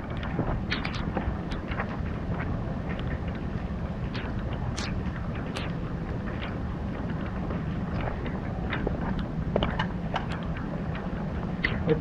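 Rain falling, with scattered drops ticking on nearby surfaces, over a steady low rumble.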